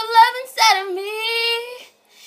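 A female voice singing without accompaniment, holding a long note, breaking briefly about half a second in and holding a second note that fades away near the end.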